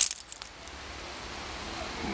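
A few quick light clicks near the start, then faint, steady outdoor background hiss.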